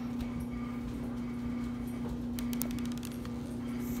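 Beaded glitter slime being squeezed and poked by hand, with a few faint clicks, a cluster of them about halfway through, over a steady low hum.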